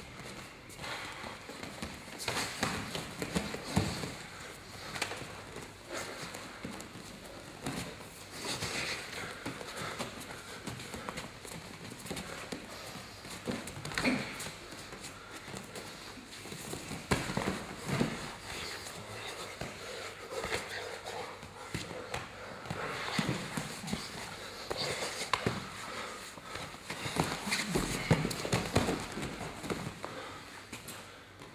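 Fighters scrambling and grappling on a training mat: irregular thuds and scuffling of bodies and feet, with the loudest knocks about four seconds in, around fourteen seconds, and near the end.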